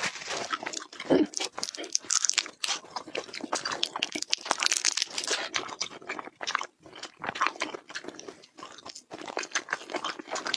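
Close-miked chewing of food: a dense run of crunching and wet mouth clicks, thinning out briefly about six seconds in and again near nine seconds.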